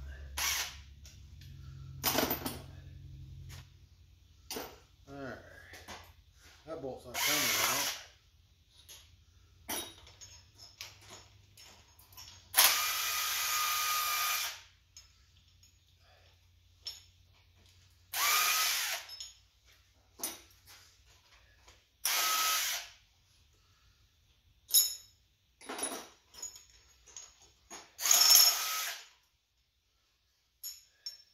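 Air impact wrench run in repeated short bursts, the longest about two seconds, spinning loosened head bolts out of an engine's cylinder head.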